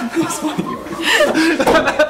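A small group of people chuckling and laughing.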